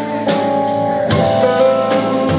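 Live rock band playing between vocal lines: electric and acoustic guitars holding chords over a drum kit that keeps a steady beat.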